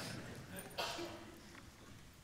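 Quiet room sound with faint human voice sounds and one short breathy burst just under a second in.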